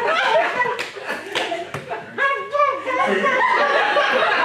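Voices with chuckling laughter from a small live audience, and a few sharp claps about one to two seconds in.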